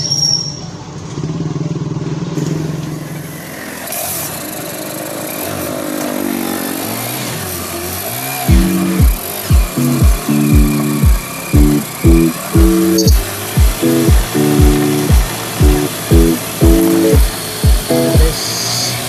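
Engine of a motorcycle tricycle running as it sets off, then background music with a strong, steady beat comes in about halfway through and drowns it out.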